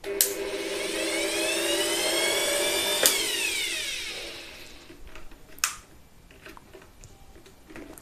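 Electric air blower's motor starting at its minimum speed setting: a whine that rises in pitch as it spins up, then a click about three seconds in and the whine falls as the motor winds down. Another single click follows a few seconds later.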